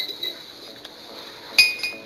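Metal spoon clinking against a glass coffee mug: one sharp clink at the start and two more close together near the end, each ringing briefly.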